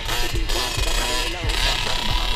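Rap music with a steady thumping beat laid over a dirt bike's engine running as it rides, from a Yamaha TT-R110 with its small four-stroke single.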